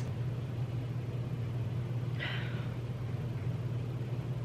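Steady low room hum, with one brief soft inhale through the nose about two seconds in, as someone smells perfume.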